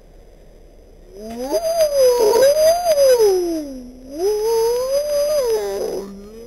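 A long, wavering vocal howl that slides up and down in pitch, in two stretches with a short break about four seconds in.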